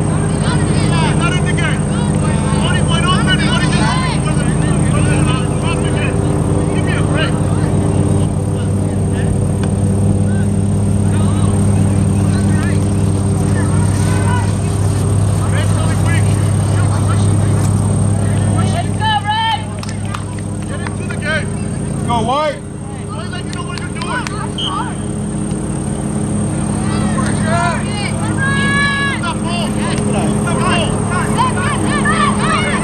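Distant shouts and calls from players and people around a soccer field, over a steady low mechanical hum that briefly drops away about two-thirds of the way through.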